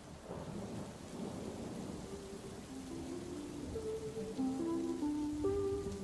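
Outro soundtrack: a rumble of thunder with rain, with held musical notes coming in about two seconds in and growing louder as a tune builds.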